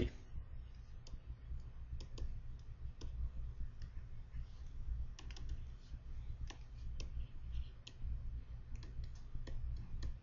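Stylus pen tapping and scratching on a tablet PC screen while handwriting, a scatter of faint, irregular clicks over a low steady hum.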